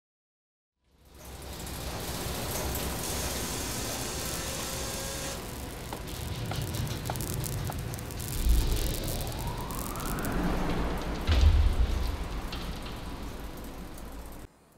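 Intro sound effects: a hiss and rumble begin about a second in. A tone rises in pitch around the middle, and two deep booms land, the second the louder, near the end.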